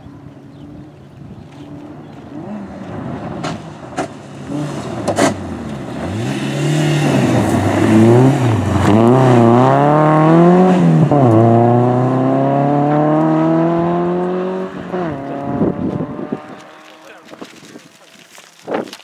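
Renault Clio Sport rally car's engine at full speed on a gravel stage, growing louder as it approaches, with a few sharp clicks along the way. Its revs swing up and down several times in quick succession, then climb in one long rise in a single gear and drop sharply at a shift before fading as the car drives away.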